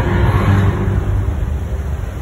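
Loud, deep rumble from the sound system of an animatronic stage show.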